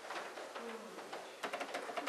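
Faint room sounds of a congregation standing at the pews: a brief low murmured voice, then a quick run of light clicks and knocks in the second half.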